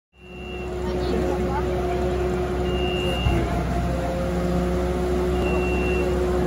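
Magirus aerial-ladder fire engine running, a steady low hum with a steady whine above it, fading in over the first second. A short high warning beep sounds about every three seconds.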